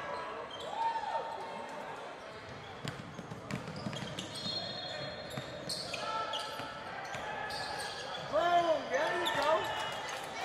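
Live sound of a basketball game in a gym: the ball bouncing on the hardwood court, sneakers squeaking, and background voices of players and spectators. The squeaks cluster near the end.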